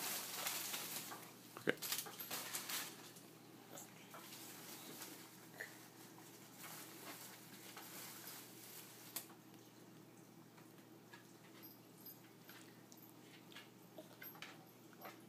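Quiet room with a faint steady hum and a few scattered soft clicks and small noises.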